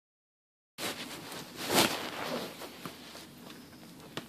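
Rustling and scraping of a cardboard shipping box and paper being handled and cut open with scissors, beginning just under a second in, with the loudest rustle about a second and a half in and a few light clicks after.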